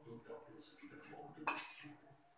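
A steel spoon scraping and clinking against a stainless steel plate of noodles, with one louder noisy burst about one and a half seconds in.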